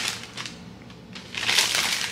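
Rustling, crinkling handling noise, fainter at first and louder in the second half.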